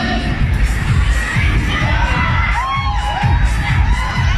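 Concert crowd cheering and screaming, many high voices at once, over a steady low bass beat.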